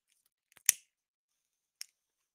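Two sharp clicks: a loud one under a second in, led by a couple of faint ticks, and a fainter one near the end.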